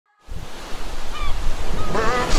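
Ocean surf washing steadily, starting after a split second of silence, with one short bird call about a second in.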